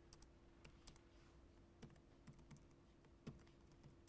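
Faint computer keyboard typing: scattered, irregular key clicks over a low steady hum.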